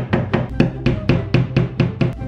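Hammer driving a nail into the wall: quick, even blows, about four a second, over background music.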